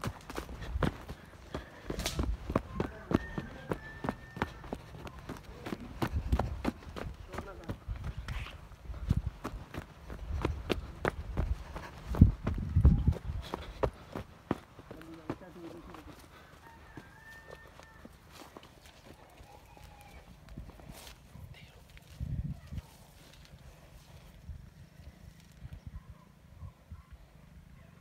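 Footsteps of people walking in sandals along a dirt and grass field path, a quick irregular run of scuffs and soft thumps that thins out and grows quieter after about halfway.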